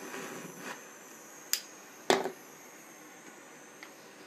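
A small butane pen torch burning with a steady faint hiss. Two sharp clicks come about a second and a half and two seconds in, the second one louder.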